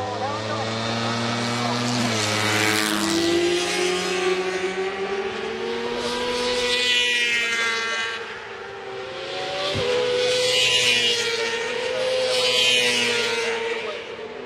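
Racing motorcycle engines at high revs as bikes pass through corners, the pitch climbing and dropping several times with each gear change and throttle roll-off, swelling loudest as each bike nears and fading between.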